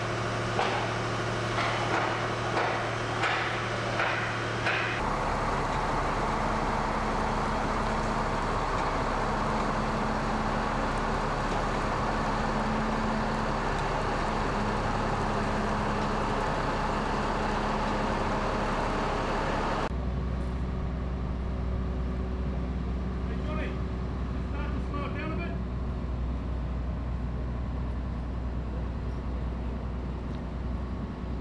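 Heavy diesel vehicle engines running: a truck hauling a long trailer, then a mobile crane's engine with a deeper steady rumble. A run of regular knocks, about two a second, comes first.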